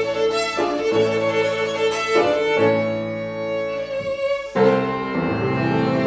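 Violin and a Baptist Streicher Viennese grand piano of 1870 playing Romantic chamber music together, the violin carrying a sustained melody of held notes over the piano, with a louder new phrase coming in about four and a half seconds in.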